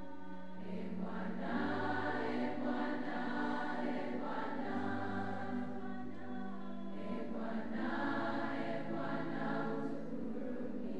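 A choir singing in slow, held chords, with a low bass line that comes and goes under it.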